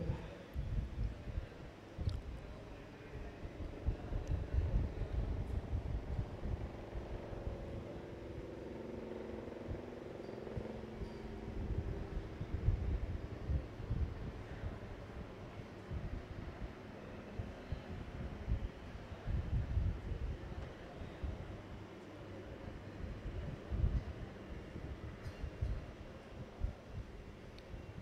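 Faint outdoor background at a cricket ground: an uneven low rumble throughout, with a faint hum rising and fading in the middle.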